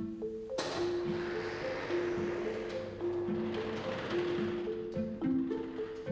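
Background music of soft mallet-percussion notes, with an electric roller shutter door rolling up: a steady rushing noise that starts abruptly about half a second in and fades out near the five-second mark.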